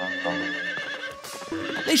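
A startled horse whinnying, one wavering, quivering call through the first second, as the horses rear. A short hiss follows about a second in.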